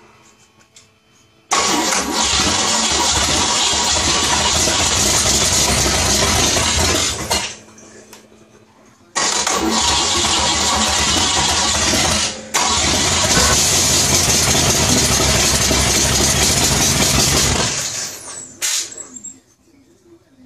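Hot rod V8 with three carburetors firing up and running loudly and steadily for about six seconds, then stopping. It is restarted a couple of seconds later and runs about eight more seconds, with a brief drop near the middle, before shutting off.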